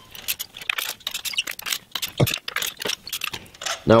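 Socket ratchet on a long extension clicking in quick, irregular runs while spark plugs are loosened, with light metallic tool clinks. There is one duller knock a little over two seconds in.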